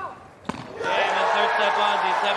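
A single sharp tennis-ball hit about half a second in, ending the point. It is followed by loud cheering from the crowd, with a player's shout in it.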